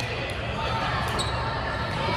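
A ball bouncing on a sports-hall court, echoing in the large room, with a couple of sharp high ticks.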